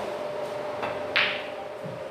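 A pool cue tip taps the cue ball, and about a third of a second later the cue ball strikes the object ball with a louder, sharper click, over a steady faint hum.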